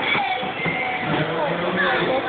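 Indistinct voices of people talking, with no clear words, and a held low voice tone in the second half.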